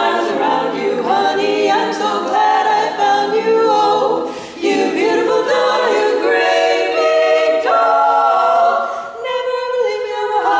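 Women's barbershop quartet singing a cappella in four-part close harmony, holding chords, with two short breaks between phrases, one near the middle and one near the end.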